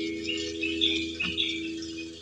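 Twelve-string acoustic guitar, a chord left ringing and slowly fading away, with a few faint high notes sounding over it.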